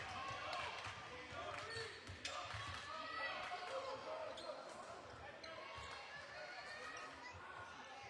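A basketball being dribbled on a hardwood gym floor, bouncing repeatedly, over the chatter of spectators' voices echoing in the gym.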